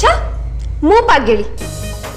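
Dramatic background music from a TV serial soundtrack: a low booming drone that began just before, carrying on under the scene. About a second in comes a short, pitched spoken exclamation.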